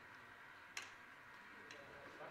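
Near silence with one sharp click about three-quarters of a second in and a fainter tick near the end.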